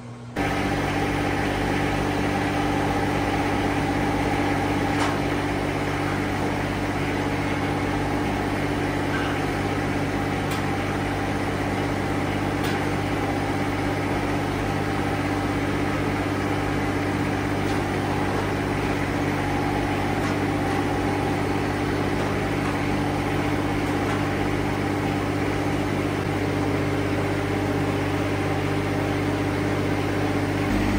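John Deere X758 garden tractor's three-cylinder diesel engine running steadily at a constant speed, with a few faint clicks over it.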